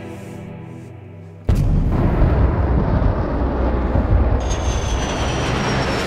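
Film soundtrack: dark, sustained music, then about a second and a half in a sudden loud, dense low rumble of war-scene sound design cuts in and keeps going. A thin high whine comes in near the end, falling slightly in pitch.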